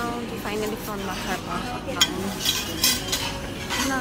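Dishes and cutlery clinking at a buffet counter, with a few sharp clinks in the second half over a background of people talking.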